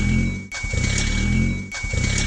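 Car engine running, its rumble swelling and dipping about every second with a sharp click at each dip, under a thin steady high tone.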